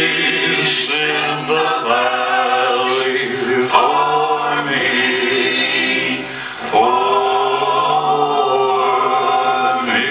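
Slow gospel song sung by voices in close choir-like harmony, holding long sustained notes, with a short break about six seconds in.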